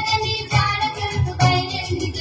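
Telugu folk-style song playing for a dance: a sung melody over a steady, regular beat.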